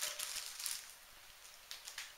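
Plastic freezer bag of sliced zucchini crinkling as it is set on a kitchen scale, dying away within the first second. A faint click or two follow near the end.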